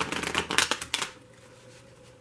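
A deck of tarot cards being shuffled by hand: a quick, dense flutter of cards snapping past one another that stops about a second in.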